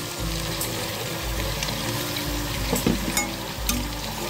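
Chicken and soya chunks frying in hot oil in a pressure cooker, sizzling steadily. Raw potato chunks drop into the pot, then a steel ladle stirs and clicks against the pot a few times near the end.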